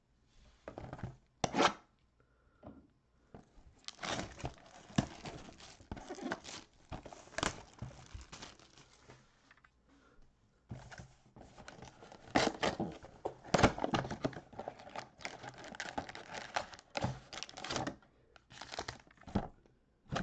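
Plastic wrap being torn and crinkled off a cardboard trading-card mega box, then the box flaps pulled open: long stretches of irregular crackling with a few sharp tearing sounds.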